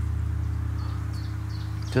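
32-inch Meinl Eight Corners of Heaven mirror gong ringing on in a steady low hum, slowly fading.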